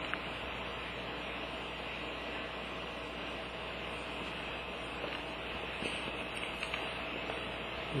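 Steady background hiss with a faint hum, the recording's room tone, with no distinct event. A couple of very faint light ticks come near the end.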